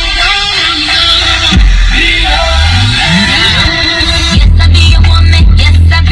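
Music playing over a car radio: electronic music with a rising sweep, then a louder, heavy bass line comes in about four seconds in.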